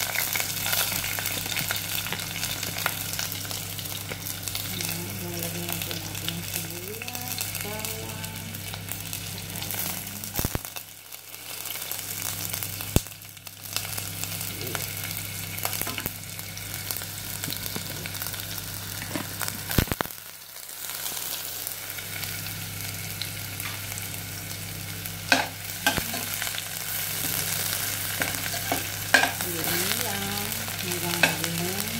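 Chopped onion, garlic and ginger sautéing in hot oil in a stainless steel pot: a steady sizzle, with a spatula stirring and now and then clinking sharply against the pot. A steady low hum runs underneath.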